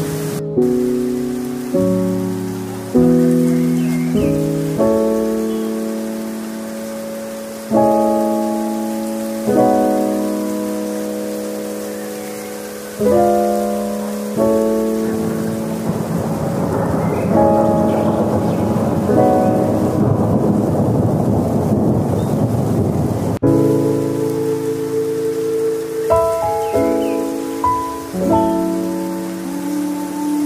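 Background music of slow chords, each struck and left to fade, laid over a rain-and-thunder sound. The rain-like rush swells in the middle and cuts off suddenly.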